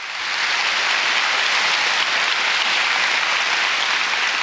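Audience applauding, rising over the first moment and then holding steady.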